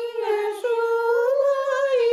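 An elderly woman singing a Bashkir folk song unaccompanied, in long held notes that rise and fall only slightly, with a brief break about half a second in.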